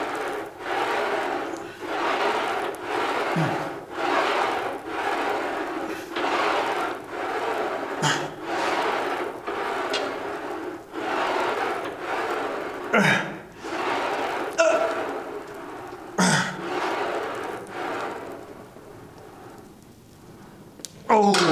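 A man's forceful breathing through repeated seated Smith machine shoulder presses, about one breath a second. Several short, louder grunts that fall in pitch come at the hardest reps, about 3, 8, 13 and 16 seconds in.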